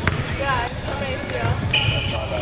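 Basketball being dribbled and sneakers squeaking on a hardwood gym floor during play. A sharp high squeak comes a little over half a second in.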